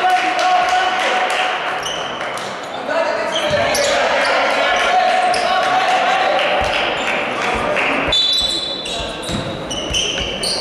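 Basketball being bounced on a sprung wooden gym floor with players' voices, echoing in a large hall. A short shrill referee's whistle blows about eight seconds in.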